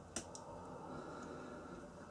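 Faint room tone with a short, sharp click just after the start and a second, softer click a moment later.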